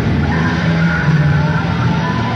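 Live rock band playing loudly: heavily distorted electric guitar with squealing, gliding bent notes over a held bass note.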